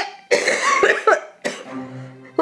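A woman coughing hard into her hand in two bouts, one long and one short, about a second apart: a staged cough, faking illness.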